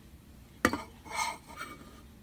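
Small hard tools being handled at a dental surveyor: one sharp tap, then a brief clinking clatter a moment later.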